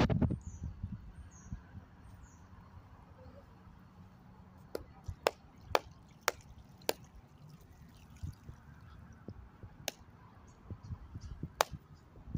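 Water poured from a plastic jug onto a block of ice at the start, then a run of sharp, separate knocks, about eight at uneven spacing through the second half, as a claw hammer strikes the ice block.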